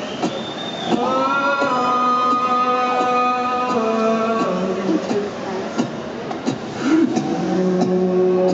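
A singer's voice holding long, steady notes into the microphone, stacked as chords and moving to new pitches every second or two, with faint clicks behind.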